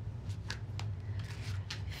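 Tarot deck being shuffled and handled, a run of short, crisp card snaps and flicks.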